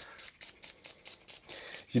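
Small finger-pump spray bottle of isopropyl alcohol squirting onto a plastic keyboard plate in a rapid run of short sprays, about five a second.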